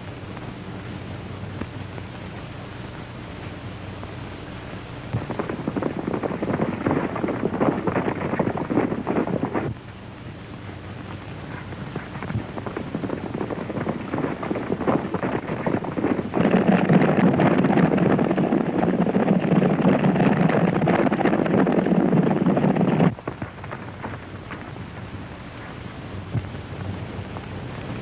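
Hoofbeats of several horses at a gallop, a dense clatter over the hiss and hum of an old film soundtrack. It comes in about five seconds in, cuts off suddenly near ten seconds, builds again and is loudest from about sixteen seconds until it stops abruptly a few seconds before the end.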